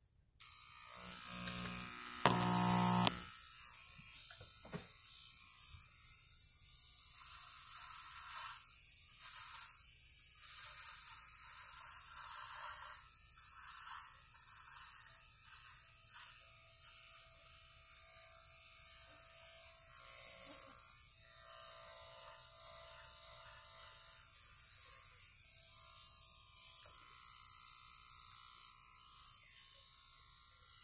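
Electric hair clippers switch on about half a second in and run steadily while cutting hair, loudest for the first few seconds.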